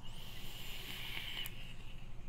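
Vape mod with a Recurve Dual dripping atomizer being drawn on: a soft hiss of air through the atomizer and firing coil for about a second and a half, ending in a faint click.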